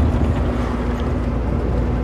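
Cab interior of a diesel truck driving at road speed: the steady low rumble of the engine and road noise, with a constant hum.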